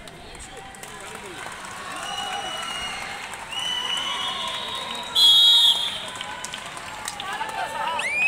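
Players and onlookers shouting and calling out across the court, with one short, sharp blast of a referee's whistle about five seconds in, the loudest sound.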